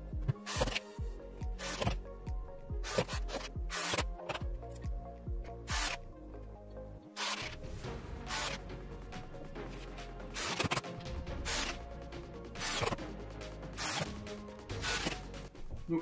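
Background music, with short sharp clicks and knocks scattered over it at uneven intervals.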